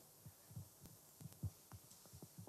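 Near silence with faint, irregular low thumps: handling noise from a handheld microphone being moved.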